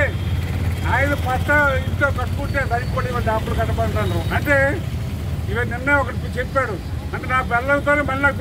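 A man speaking loudly in Telugu to an outdoor gathering, in short phrases with brief pauses, over a steady low rumble like nearby engines or traffic.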